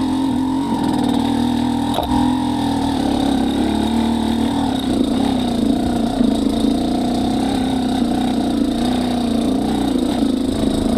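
2017 Yamaha YZ250X two-stroke engine with an XTNG GEN3+ 38 metering-rod carburetor lugging at very low RPM in first gear, no clutch, as the bike crawls uphill and slows: a steady, slightly wavering low engine note held just above the stall point in a low-end torque test. A sharp knock about two seconds in.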